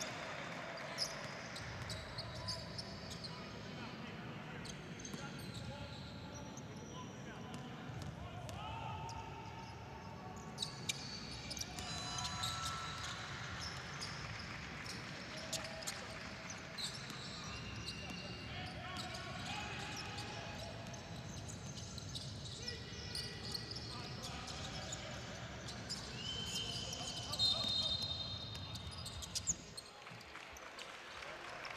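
Live basketball in an indoor arena: a basketball bouncing on the hardwood court, and sneakers squeaking in short high chirps, over the steady murmur of voices in the hall.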